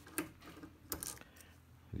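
A few light metallic clicks as a car key on metal split key rings is picked up and handled, the clearest about a quarter second in and about a second in.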